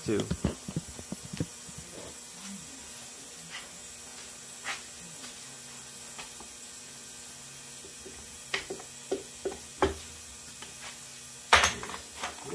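Hand tools and metal parts clicking and clinking while an outboard's powerhead is worked on: a quick run of clicks at the start, a few scattered single clicks, and a louder cluster of knocks near the end, over a steady hiss.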